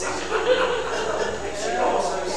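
Only speech: a man's voice talking, its pitch rising and falling.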